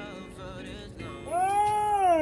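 A song plays softly for about the first second. Then a man's voice comes in much louder with one long drawn-out vocal sound that holds a high pitch and then slides down.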